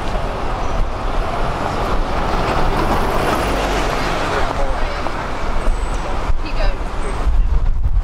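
Busy city-street ambience: steady road traffic from cars and buses, swelling as a vehicle passes about three seconds in, with passers-by talking.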